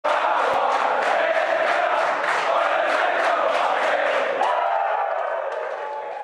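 Large crowd chanting and cheering, with sharp claps in a steady beat of about three a second; it fades away near the end.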